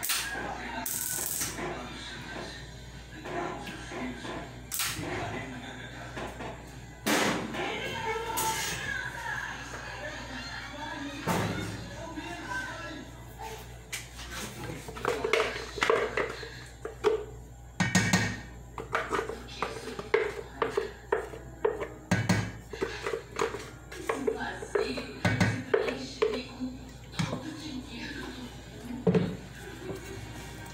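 Background voices and music, with scattered sharp knocks and clatter against a metal cooking pot, most of them in the second half.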